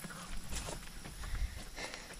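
Light footsteps on grass: a few soft, irregular steps over a low rumble on the microphone.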